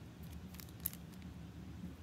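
Faint handling of a small clear plastic packet: light crinkles and one short sharp click a little under a second in, over a low steady room hum.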